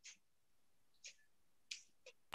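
Near silence, broken by three faint, very short clicks: one at the start, one about a second in and one near the end.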